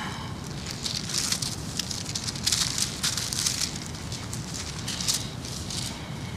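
Thin Bible pages rustling and crinkling as they are leafed through, in short irregular crisp rustles.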